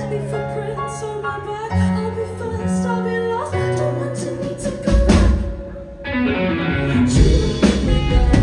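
Live rock band playing: a woman sings lead over held chords and electric guitar. Drums come in about five seconds in, and after a brief drop the full band returns louder.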